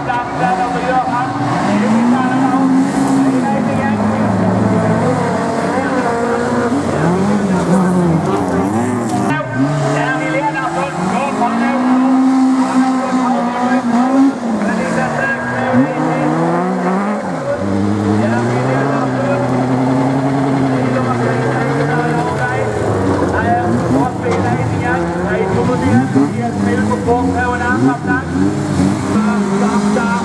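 Folkrace cars racing on a dirt track, several engines revving up and down repeatedly as the drivers lift and open the throttle through the corners.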